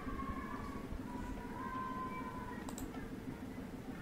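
Faint room hum with thin, drifting tones. A computer mouse double-clicks about three-quarters of the way through.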